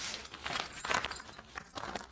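Folded cotton sarees being handled and laid on a stack, the cloth rustling, with a light jingle of the bangles on the seller's wrists.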